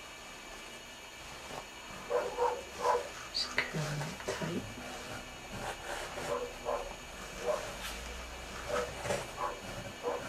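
A dog barking in short bursts, starting about two seconds in and repeating irregularly.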